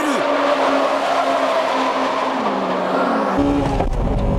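Honda Integra Type R race cars' 1.8-litre VTEC four-cylinder engines running hard, with tyres squealing through a corner. The engine note drops a little about three seconds in. Just after, the sound switches abruptly to a deeper, closer engine heard from inside a car.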